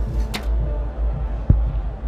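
A recurve bow shot: a single sharp thump about one and a half seconds in, over a steady low rumble.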